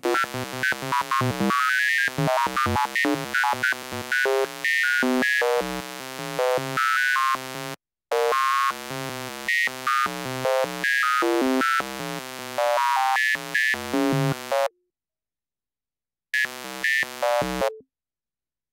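Kilohearts Phase Plant synth patch playing: an analog oscillator run through a frequency shifter under a random LFO, giving a fast stream of short synth notes that jump about randomly in pitch. It breaks off for a moment about eight seconds in, falls silent for a second or two around fifteen seconds, then plays briefly again.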